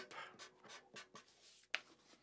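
A felt-tip marker writing on paper: a few short, faint scratchy strokes and the rustle of the sheet, with one sharp click near the end.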